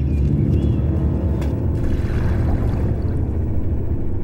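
A steady, deep rumble, a dramatic sound effect.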